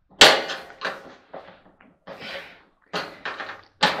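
Clothes dryer's metal top panel being handled and lifted: a sharp bang just after the start, smaller knocks and a brief scrape, and another bang near the end.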